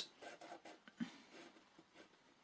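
Pen drawing short strokes on paper: faint scratches, with a soft knock about a second in.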